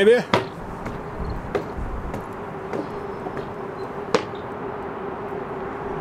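Footsteps climbing steel stairs: scattered light knocks, the sharpest a little after four seconds, over steady outdoor city background noise with a faint constant hum.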